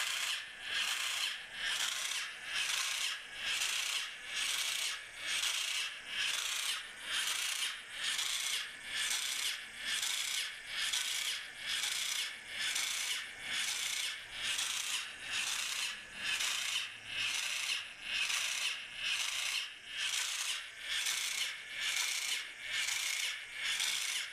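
Homemade electric mace's motor-driven flanged, spiked ball head turning on a wooden workbench, giving a rhythmic scraping rub a little over once a second.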